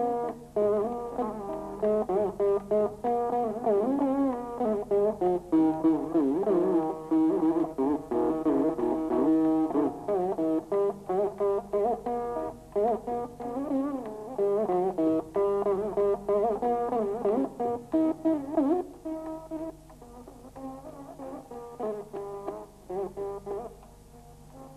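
Saraswati veena played solo in raga Begada: rapid plucked notes with wide, wavering pitch bends (gamakas), typical of a Carnatic varnam. The playing turns softer over the last five seconds.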